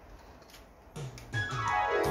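Music played back from MiniDisc through a Denon mini hi-fi system and its bookshelf speakers. It starts about a second in with a falling run of notes, then held keyboard-like chords.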